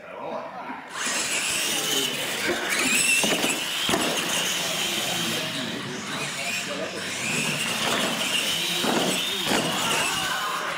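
Electric R/C monster trucks racing flat out on a concrete floor: a loud, high motor and gear whine with tyre noise that starts suddenly about a second in as they launch, then rises and falls in pitch as they run down the track.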